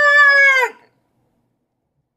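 A person's voice calling out a long, drawn-out "Stiiiick!", held at one high pitch for under a second and dropping away at the end.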